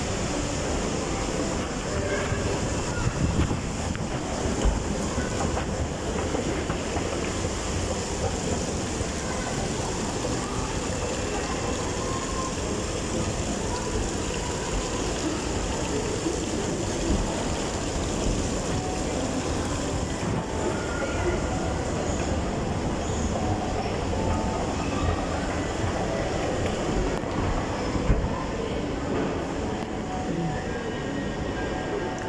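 Steady rushing ambience of a large indoor shopping mall, with water running down an artificial rock waterfall and a constant wash of noise, under faint distant voices.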